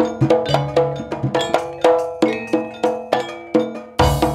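Javanese gamelan playing, led by bronze bonang kettle gongs struck in a steady run of ringing metallic notes, about three or four a second, each fading before the next.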